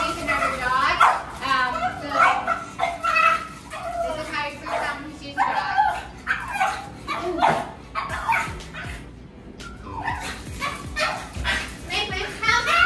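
French bulldog whining and barking repeatedly, in short, high-pitched, bending calls with a brief lull about two thirds of the way through.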